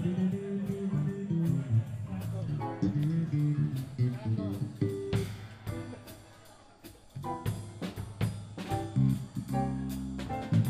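Small jazz band playing live: guitar and electric bass over a drum kit, in swing style. The music thins out briefly about six seconds in, then picks up again.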